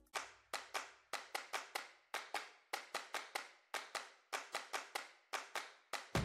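Sparse rhythmic percussion: short, sharp clap-like hits, about four or five a second with a few brief gaps. A faint low hum runs under the first second.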